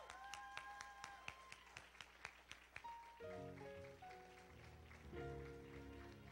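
Faint sustained keyboard chords, shifting to a lower, fuller chord about three seconds in, with scattered hand claps over the first three seconds.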